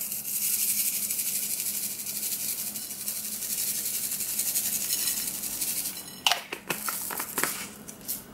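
Sugar sprinkles rattling in a small plastic shaker jar as it is shaken out over pancakes, a steady, dense rattle for about six seconds. A few separate clicks and knocks follow near the end.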